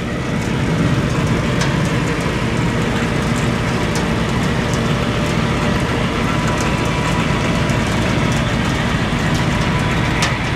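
Heavy yard machinery running steadily: a constant low engine drone with rattle, a faint high whine over it, and a few light clicks.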